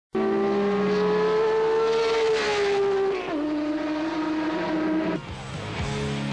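Turismo Carretera race car engine running hard at high revs. Its pitch steps down about three seconds in, and it cuts off abruptly just after five seconds.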